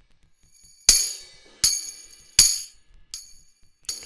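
Sampled tambourine from the Reason Drum Kits software instrument, played alone: three crisp hits about three-quarters of a second apart, each with a short jingle ring, then two fainter hits near the end.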